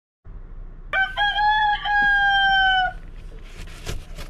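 A rooster crowing once: a few short clipped notes, then one long held note that sinks slightly in pitch and stops about three seconds in. Soft rustling follows near the end, over a low steady background hiss.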